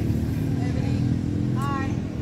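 A small engine running with a steady low drone, and a brief high-pitched voice near the end.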